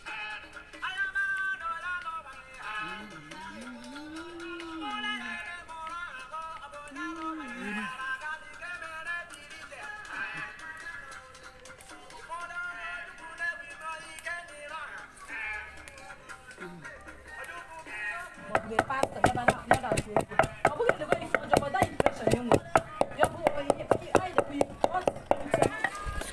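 Local Edda music with singing plays throughout. About two-thirds of the way in, a steady run of sharp knocks starts suddenly over it: a wooden pestle pounding dry pepper in a mortar.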